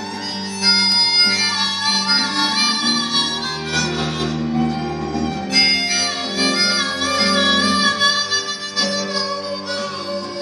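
Harmonica playing a melody of long held notes in two phrases, with a short break in the middle. Acoustic guitar and bowed strings (cello and violin) play underneath.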